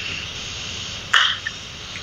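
A pause in a video-call conversation filled with steady microphone hiss, with one short breathy burst about a second in.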